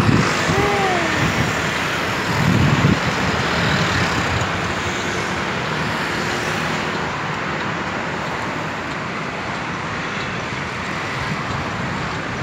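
City street traffic: cars and motor scooters passing through an intersection, a steady wash of road noise with one louder passing vehicle about two and a half seconds in.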